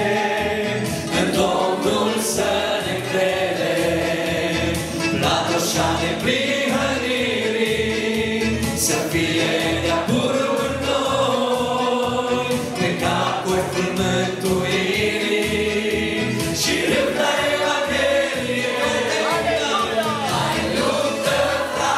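A mixed group of male and female voices singing a worship song together into microphones, over a band accompaniment with a steady low beat.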